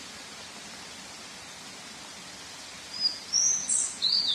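Steady hiss of falling water from a waterfall, with birds chirping. A run of high, gliding chirps comes in about three seconds in.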